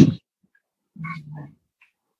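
A person laughing: a loud breathy burst right at the start, then a short voiced chuckle about a second in.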